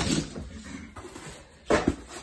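A sample panel being handled against a wall, with a brief scraping knock near the end as it is set in place.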